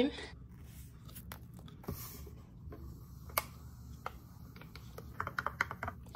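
Scattered light clicks and taps from hands handling small objects, with a quick run of clicks near the end, over a steady low hum.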